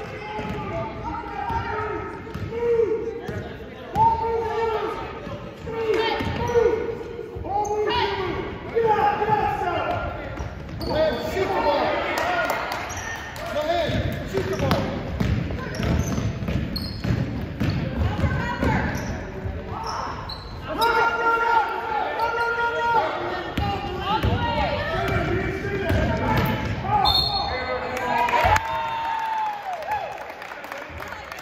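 Basketball game on a hardwood gym floor: the ball bouncing and players' feet hitting the court, with voices calling out across the echoing gym.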